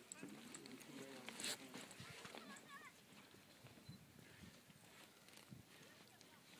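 Faint, indistinct voices of people some way off, with a sharp click about a second and a half in; after that only quiet outdoor air.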